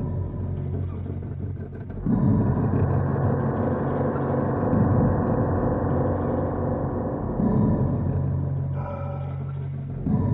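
Dark ambient horror music: low, steady droning tones, joined about two seconds in by a louder, fuller layer of held notes that falls away near the end.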